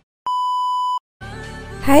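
A single steady electronic beep lasting under a second, cleanly cut on and off, with silence either side; faint room sound follows.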